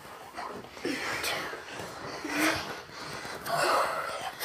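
Children breathing hard as they do squats: a string of breathy puffs about a second apart, with a short faint vocal sound in the middle.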